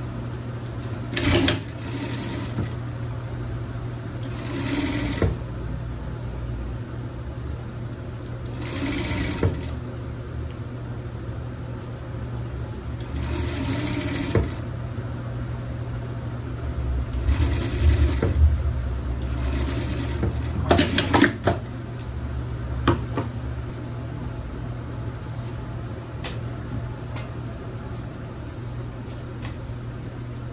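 Industrial lockstitch sewing machine stitching satin fabric in short runs of one to two seconds, six runs in the first two-thirds, over a steady low hum. A few light clicks follow as the fabric is handled.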